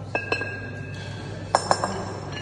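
Two 14 kg steel competition kettlebells knocking against each other with a ringing metallic clink. There are two clinks just after the start, as the bells come down from overhead, and a louder run of three near the end, as they drop into the swing.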